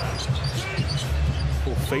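Basketball being dribbled on a hardwood court, with steady arena crowd noise.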